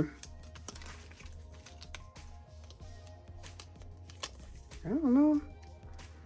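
Sticker sheet handled and a sticker strip peeled from its backing: light paper crinkles and small clicks over faint background music. A short hummed voice sound comes about five seconds in.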